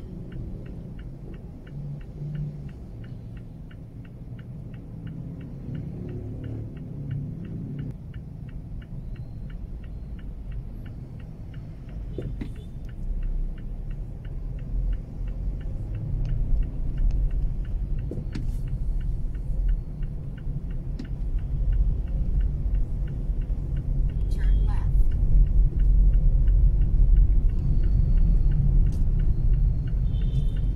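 Inside a Mazda3's cabin in slow traffic: low engine and road rumble that grows louder about halfway through as the car moves off. Through the first half a fast, even ticking of about three a second, like a turn-signal indicator, runs under the rumble.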